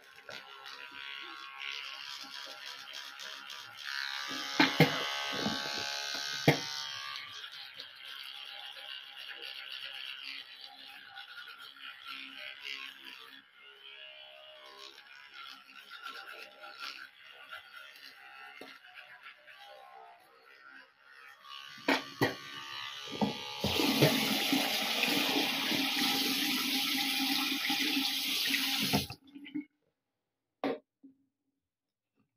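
A manual toothbrush scrubbing teeth, a steady bristly hiss. About 24 seconds in, a louder rush of running water comes in for about five seconds and cuts off suddenly.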